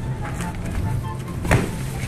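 A large cardboard box knocks once against the asphalt about a second and a half in, over a steady low hum and background music.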